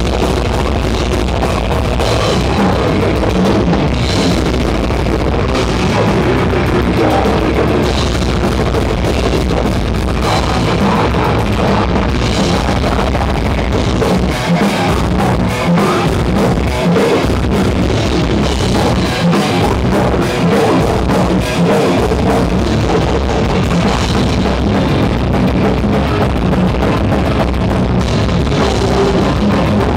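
Live death metal band playing loudly and without a break: distorted electric guitars over a fast, dense drum kit, with the low end dropping out briefly a few times past the middle.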